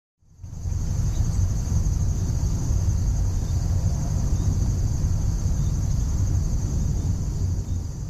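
Forest ambience: a steady low rumble under a continuous high-pitched chirring of crickets, fading in at the start.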